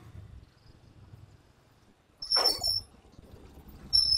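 Small motorcycle engine running faintly as the bike rides away, with a short high-pitched squeal about two seconds in and another starting at the very end.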